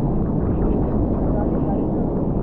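Water pouring through the dam's gates and churning white below the wall: a steady, loud rush with most of its weight in the low end.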